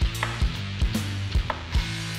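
Chef's knife slicing button mushrooms on a wooden cutting board: a run of sharp knocks as the blade meets the board, over background music.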